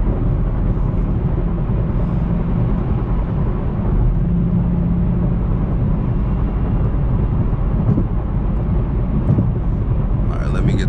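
Chevrolet Camaro ZL1 cruising steadily at highway speed, heard from inside the cabin: a steady low drone of its supercharged 6.2-litre V8 mixed with tyre and road noise, swelling slightly about four seconds in.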